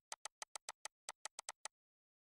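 A quick, uneven run of about a dozen light clicks at a computer, from a mouse or keyboard being worked, that stop shortly before the end.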